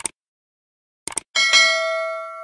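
Sound effects for a subscribe-button animation: a short mouse click, then a quick double click about a second in, followed at once by a bell ding that rings on with several steady tones and slowly fades.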